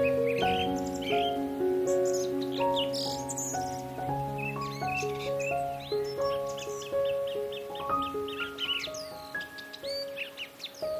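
Instrumental background music with a slow melody of held notes, overlaid with bird chirps, including a quick even run of chirps about two-thirds of the way through.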